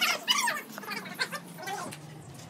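A domestic animal calling: a string of short, wavering cries, loudest at the start.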